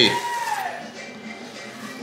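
Soft background music, with the tail of a spoken word at the very start.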